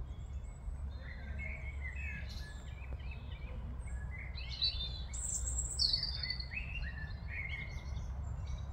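Woodland songbirds singing: a run of short chirps and whistled phrases from about a second in, with high, falling notes the loudest around the middle, over a steady low rumble.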